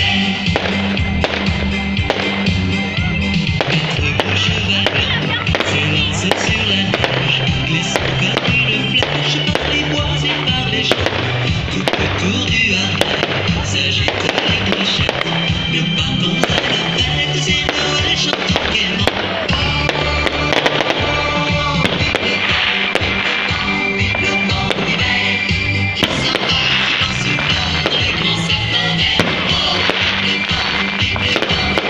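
Fireworks bursting and crackling again and again over loud music with steady bass notes.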